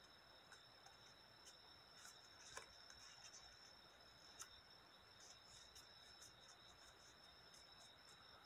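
Near silence: faint, scattered crinkles and ticks of colored paper being folded and creased by hand, over a faint steady high-pitched whine.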